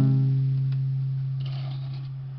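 Acoustic guitar chord, strummed just before, ringing out and slowly fading, with a faint click under a second in.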